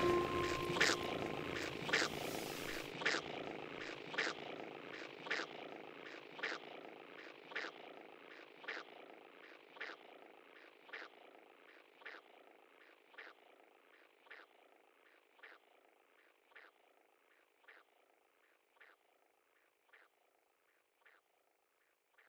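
Evenly spaced clicks, a stronger one about every second with softer ones between, over a faint hiss, fading slowly away until almost nothing is left as the music's final notes end.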